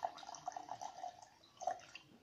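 Tequila poured from a glass bottle into a drinking glass: a faint, uneven trickle of liquid hitting the glass.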